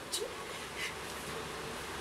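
Low steady background noise with a few soft, brief rustling and handling sounds as a person shifts on a bed and moves an acoustic guitar.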